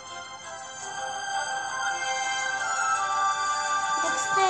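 Light electronic background music from a children's game app, with held chime-like synth notes, growing steadily louder.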